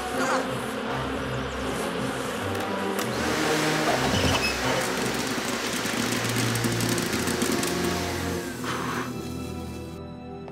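Canister vacuum cleaner running and sucking up a swarm of horseflies, over background music. The steady suction noise swells about three seconds in and drops away near the end.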